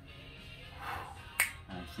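A single sharp finger snap about one and a half seconds in, over faint background music.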